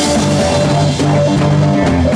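Live blues band playing: electric guitars and electric bass over a drum kit with cymbals.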